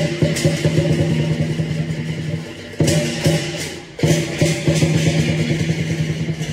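Lion dance percussion: a drum beaten in rapid strokes under clashing cymbals and a steady ringing tone, with fresh cymbal crashes about three and four seconds in.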